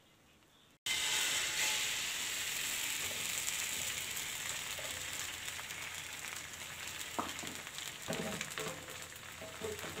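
Egg sizzling in hot oil in a flat pan. The sizzle starts suddenly about a second in, loud at first, and slowly dies down. A few light clicks come near the end.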